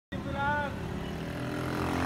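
Low, steady rumble of street traffic, with a faint voice briefly about half a second in.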